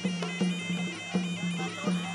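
Traditional Khmer ringside boxing music: a sralai, a nasal reed pipe, playing a stepped melody over a steady drumbeat.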